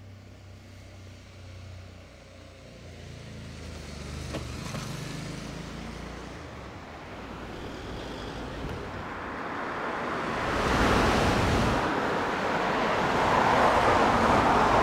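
Road traffic: a low engine hum at first, then the broad noise of a passing car swelling in the second half and growing louder toward the end.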